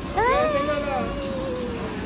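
A single long, high-pitched cry that rises and then slowly falls in pitch, like a drawn-out meow.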